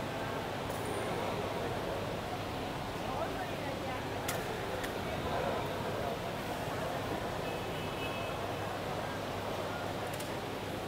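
Indoor sports-hall ambience: a steady murmur of indistinct voices and room noise, with a sharp click a little over four seconds in.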